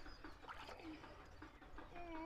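Faint light splashing and dribbling of water in a plastic tub as a toddler paddles his hands, with birds calling in the background.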